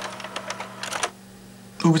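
Quick clicking like keys being typed, stopping about halfway through, over a low steady hum.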